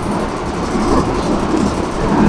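A steady low rumble under a noisy hiss, with no clear pattern or strokes.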